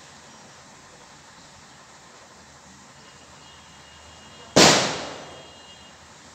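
A single sudden loud bang about four and a half seconds in, dying away over about half a second.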